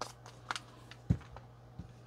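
A few light clicks and taps of small objects being handled on a workbench, with a soft low thump about a second in, over a faint steady low hum.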